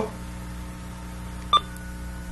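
A single short telephone keypad beep about a second and a half in, over a steady electrical hum.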